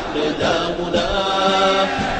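An Arabic revolutionary song sung in chant style by a group of voices, moving between notes and then holding one long note near the end.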